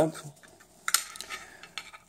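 Crumpled plastic wrapping being pulled off and handled, crinkling, with a sharp click about a second in as loose parts are handled.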